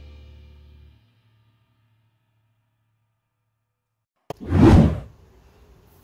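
Music ringing out and fading away within the first second, then silence. About four seconds in, a click and a short, loud whoosh of rushing noise that swells and dies away in under a second.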